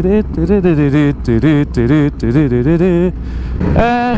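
A man's voice with a rising and falling pitch, stopping about three seconds in, over the steady low rumble of a motorcycle ride.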